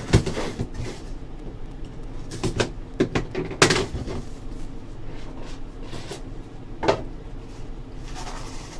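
A small trading-card box (Leaf Ultimate Draft) being handled and opened on a table: scattered knocks and taps, the loudest about halfway through, as its seal is worked open and its lid is lifted.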